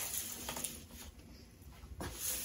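Faint rustling and light crackling of evergreen boughs as a large pine cone is pushed in among the needles of a cedar and pine arrangement.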